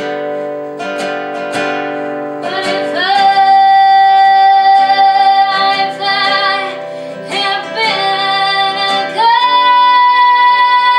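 A woman singing to her own strummed acoustic guitar: guitar chords alone at first, then her voice comes in about three seconds in with long held notes, rising to a higher held note near the end.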